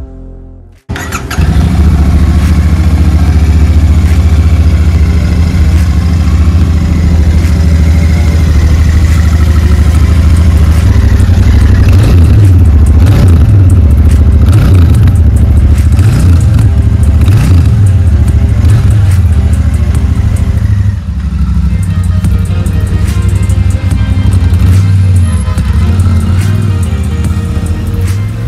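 Royal Enfield Super Meteor 650's 648 cc parallel-twin engine and exhaust running. The sound comes in suddenly about a second in, and is revved in several blips about halfway through, its pitch rising and falling each time.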